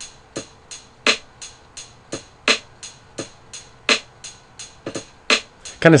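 Programmed drum-machine beat from a step sequencer (kick, snare and closed hi-hat) played back with swing turned all the way up, giving a loose, shuffling rhythm of short sharp hits about three a second.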